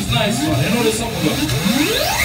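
Several voices talking and calling out at a loud party, with little music under them. Near the end a single pitched sweep rises steeply.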